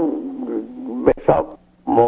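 A man's voice: a long drawn-out hesitation sound, then a few short syllables about a second in.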